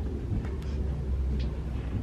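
A steady low hum of room ambience, with a few faint ticks.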